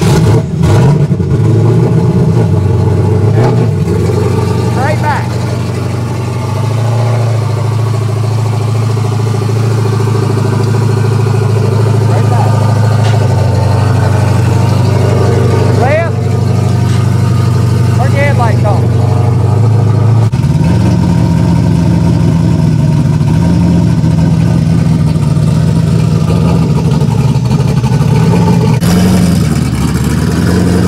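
Race car's engine running loudly at a steady idle, its speed stepping up about twenty seconds in.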